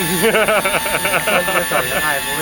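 A man laughing in a quick run of short bursts, over a faint steady hum from the RC helicopter's motor.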